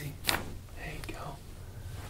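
A single sharp crack from a chiropractic neck adjustment, the cervical joints popping as the head is manipulated, followed by faint whispering.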